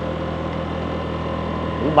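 Motorbike engine running steadily while riding, with a constant hum and road noise.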